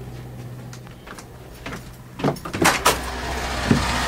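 A tour bus door being opened: a few sharp clunks and knocks about two seconds in, after which outside noise with a steady low engine hum comes in and grows louder.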